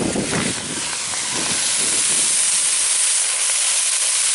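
Agathi leaves, shallots and dried red chillies sizzling in a hot clay pot, a steady steamy hiss that grows louder over the first couple of seconds as they are stirred.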